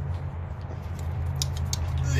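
A steady low hum, with a few light metallic clicks about one and a half seconds in as an alternator is worked loose and lifted off its mounting bracket on the engine.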